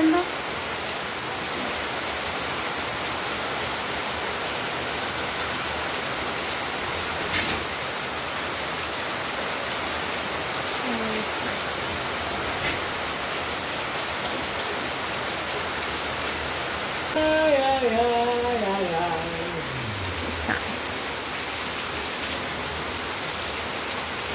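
Steady rain falling on the yard and the porch roof, an even hiss. About three-quarters of the way through, a pitched sound slides down in pitch for about three seconds over the rain.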